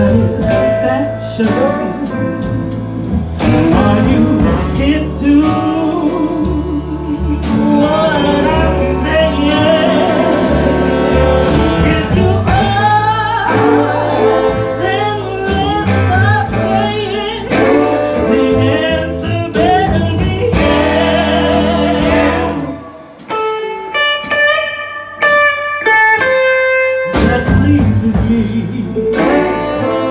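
Live swing-blues band playing: a woman singing over upright bass, drums, electric guitar and keyboard. A little past two-thirds of the way in, the band drops out for a few seconds, leaving a sparse line of high notes, then comes back in full.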